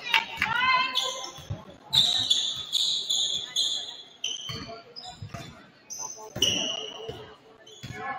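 A basketball is dribbled repeatedly on a hardwood gym floor, its bounces echoing in the hall, with high squeaks of sneakers on the floor.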